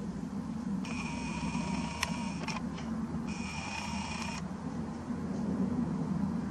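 Nikon Coolpix P900 lens zoom motor whirring in two runs, about two seconds and then about one second, with a few sharp clicks, over a steady low hum.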